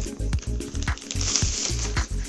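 Thin plastic wrapping rustling and crinkling as it is pulled off a fabric bag, loudest a little past halfway, over background music with a steady beat.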